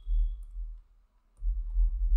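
Computer keyboard being typed on: a few dull keystroke clicks in two short spells, with a pause of about a second between them.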